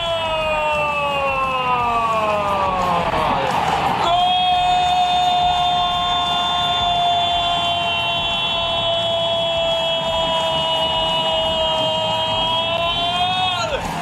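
A Spanish-language football commentator's drawn-out goal shout, held in two long breaths. The first sinks slowly in pitch until a break about four seconds in. The second is held at one steady high pitch for nearly ten seconds before falling away near the end.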